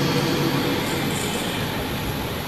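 Steady rushing background noise, with no speech.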